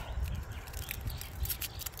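Faint, scattered crackles of a garlic head's dry papery skin as cloves are pulled off it by hand, over a low steady rumble.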